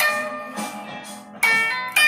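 Guitar played slowly. A note struck at the start rings and fades, then a second note is plucked about one and a half seconds in and left to ring.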